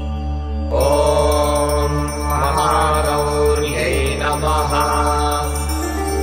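Sanskrit devotional hymn (stotram) sung in a chanting style over a steady drone accompaniment. The voice comes in just under a second in and holds long, wavering notes.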